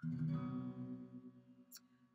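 Acoustic guitar strummed once at the start and left to ring out, the chord fading away over two seconds: the opening chord of the song before the singing comes in.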